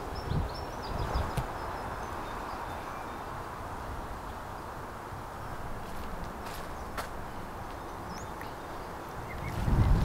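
Outdoor ambience: a steady low rush with faint bird chirps now and then, and a single sharp click about seven seconds in.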